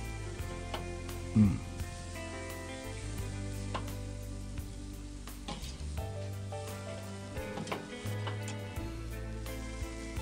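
Ground-chuck burger patties sizzling on a charcoal grill grate, with a few clinks and scrapes of a metal spatula as they are turned. Background music plays underneath.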